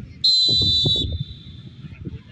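Referee's whistle: one shrill blast of just under a second, then a fainter tail, the signal that the penalty kick may be taken.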